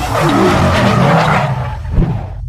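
Car tyre-skid sound effect: a screech over a low rumble, with a sharp hit near the end.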